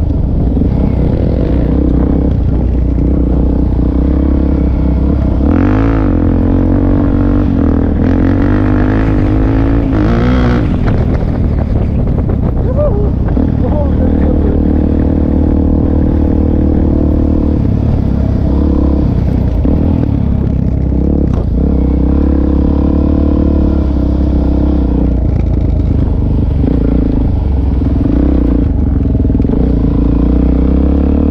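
Suzuki DR-Z400 supermoto's single-cylinder four-stroke engine running under way from the rider's own seat. The revs dip and climb again a couple of times in the first ten seconds, then hold fairly steady.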